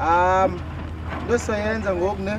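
People's voices: a loud, high call lasting about half a second at the start, then talking from about a second and a half in, over a steady low hum.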